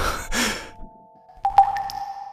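A heavy, breathy exhale from a voice actor over sustained background music tones. About a second and a half in, a sharp struck note rings on into the music.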